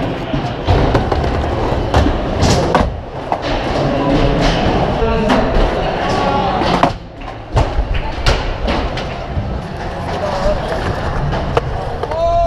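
Busy crowd chatter with music in the background, broken by scattered sharp clacks and knocks of skateboards.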